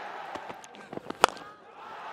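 Cricket stadium crowd noise with a few sharp knocks, the loudest about a second and a quarter in. The sound then drops away briefly.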